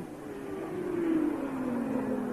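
A 1982 Formula One car's engine, its single note falling slowly in pitch as the car goes by.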